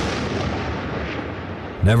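A single loud gunshot that cuts off a man's voice mid-sentence, followed by a long rolling echo that fades over nearly two seconds.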